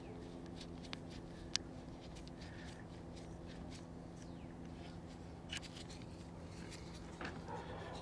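Low, steady electrical hum with a few faint, sharp clicks scattered through it.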